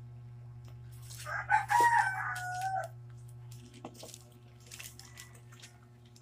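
A rooster crowing once, a drawn-out call starting about a second in and lasting about a second and a half, over a steady low hum.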